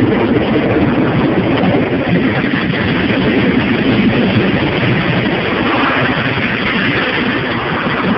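Car wash water jets and spray pelting the car's roof, sunroof and windshield, a loud steady rushing heard from inside the cabin.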